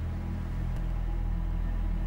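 A steady low drone with no other events, holding level under a pause in the dialogue.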